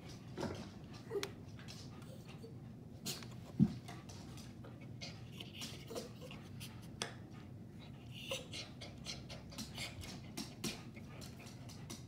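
Rain falling, heard as irregular sharp drips and ticks of water close to the microphone over a low steady background, with one louder short thump about three and a half seconds in.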